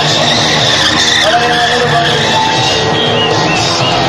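Stunt motorcycle's front tyre squealing on concrete as the bike is swung around on its front wheel in a stoppie circle, with the engine running. Music plays along.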